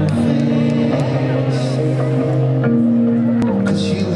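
Live band music heard from the stadium audience: slow, held chords that change every second or so, with voices over them.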